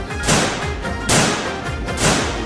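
Background music with loud sharp cracks, one shortly after the start and another about a second in, each trailing off briefly; they repeat at an even pace of a little under one a second.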